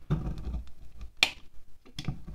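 Knife blade scraping and shaving wax off a candle: short, crisp scraping strokes, with one sharp, loudest stroke a little past halfway.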